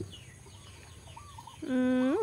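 A quiet outdoor lull with a faint, short, wavering animal call about a second in. Near the end a woman's drawn-out 'uhh' is held on one pitch, then slides up into speech.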